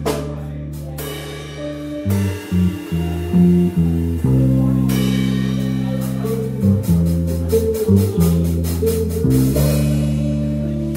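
Live instrumental band music from a double bass, drum kit and electric guitar. Deep bass notes carry the line with drum hits, and from about halfway through a quick, even cymbal pattern runs until near the end.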